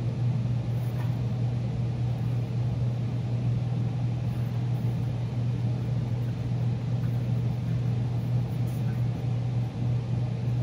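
A steady low hum from a running machine, holding one pitch without change.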